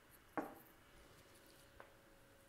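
Near silence with a faint steady hum, broken by one short soft knock about half a second in and a faint tick near the end.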